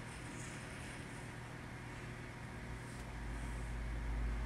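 Quiet room tone with a steady low hum. About three seconds in, a low rumble rises as the phone recording the scene is moved.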